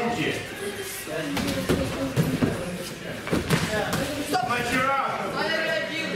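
Gloved punches and kicks landing in a sanda sparring bout: several sharp thuds around the middle, under men's voices calling out in the gym.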